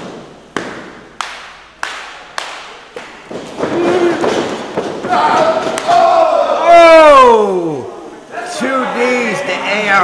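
Five sharp thuds of blows landing in a wrestling ring, evenly spaced about every half second, each with a short echo. A few seconds later comes a man's long drawn-out yell that slides down in pitch.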